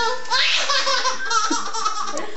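A baby of about seven months laughing in several short bursts.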